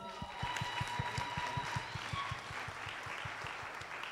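Audience applauding with a dense patter of hand claps that tapers off slightly toward the end.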